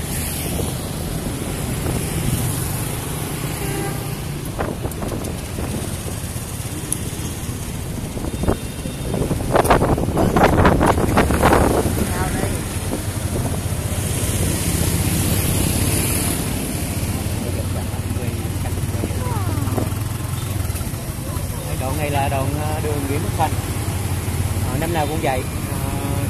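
Street traffic with motorbikes passing and a steady low engine hum; one vehicle passes close, loudest from about ten to twelve seconds in. People's voices are heard near the end.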